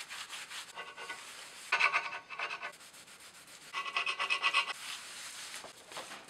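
Cloth rubbed hard against the metal head of an old hand-operated hot-foil arming press, squeaking in strokes: a short one about a second in, then two longer ones around two and four seconds in.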